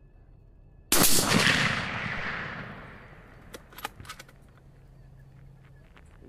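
A single rifle shot about a second in, its report rolling away over about two seconds. A few sharp clicks follow a couple of seconds after the shot.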